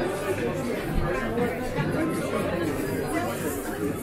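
Indistinct chatter of several people talking at once, with no single voice standing out.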